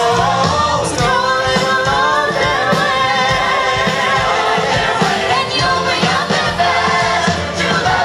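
Youth show choir singing an upbeat number into microphones with live band accompaniment and a steady beat, amplified through the stage speakers.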